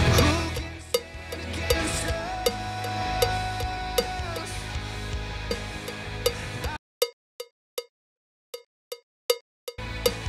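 A recorded song plays back from Logic Pro, the reference track, with a pitched metronome click ticking over it at a steady beat. About seven seconds in, the song cuts out abruptly and only the click is left. The song comes back just before the end.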